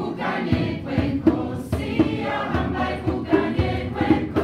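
A mixed choir of men and women singing together, amplified through the stage sound system, with low thumps of a beat recurring under the voices.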